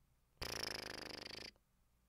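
A person's short raspy, breathy vocal noise lasting about a second, starting just under half a second in and cutting off suddenly.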